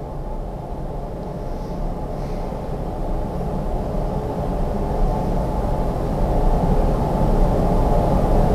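A steady low rumble with a faint hum in it, slowly growing louder.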